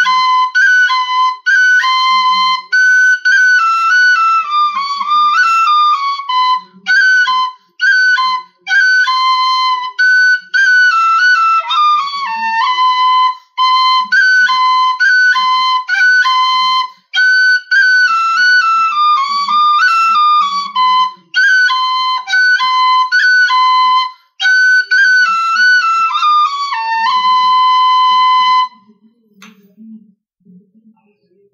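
Tin whistle played solo: a quick melody that bounces between two notes and runs down in short steps, ornamented with cuts (brief grace-note flicks made by lifting and replacing a finger). The playing stops about a second before the end.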